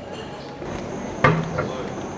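Street ambience with faint voices of people around, broken a little past the middle by one sharp knock and a softer second one just after.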